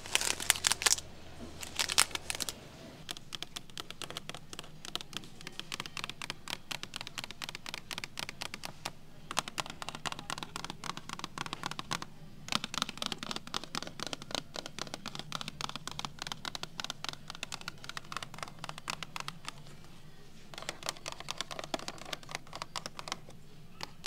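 Long acrylic fingernails crinkling the plastic sleeves of vinyl records, loudest in the first couple of seconds. Then long runs of quick, fine tapping and scratching on cardboard and plastic-window toy boxes, with louder scratchy bursts near the end.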